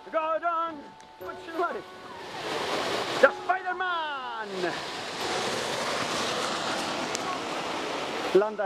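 Short excited shouts from people at a climbing obstacle, then a long yell that falls in pitch, under a steady rushing noise that builds up and holds for the last few seconds.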